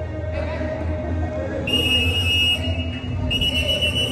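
Referee's whistle blown twice, two steady high blasts of about a second each, the first starting a little under two seconds in.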